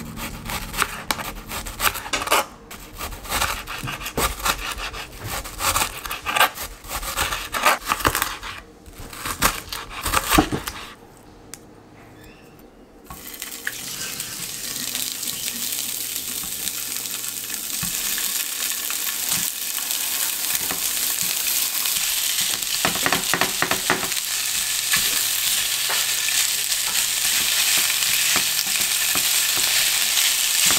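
A knife slicing a red onion on a plastic cutting board, a quick run of sharp taps for about the first ten seconds. Then, from about thirteen seconds in, sausages sizzle in a nonstick frying pan, the sizzle growing steadily louder, with a silicone spatula stirring them near the end.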